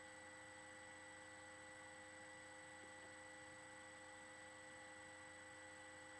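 Near silence: a steady electrical hum with a faint high whine on the recording.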